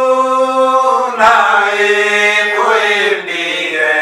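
Men singing a Swahili hymn unaccompanied, in long held notes.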